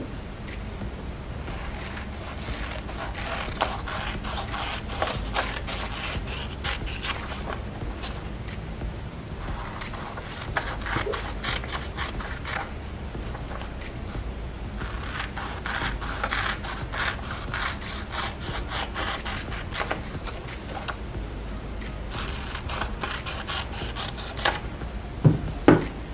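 Scissors cutting through book pages, in runs of quick snips with short pauses between them, with the paper rustling as it is turned.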